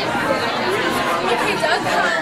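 Several voices talking over one another in indistinct chatter.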